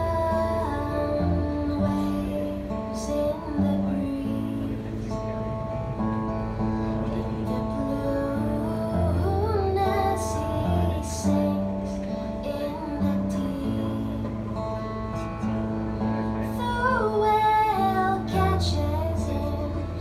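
Two acoustic guitars played together, picked and strummed, while a woman sings a slow melody over them.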